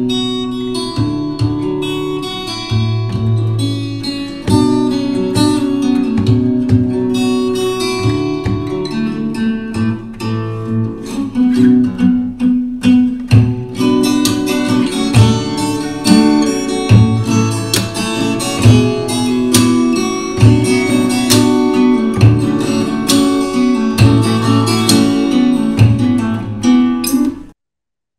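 Pre-recorded fingerstyle acoustic guitar piece: a plucked melody over low bass notes, cutting off suddenly near the end.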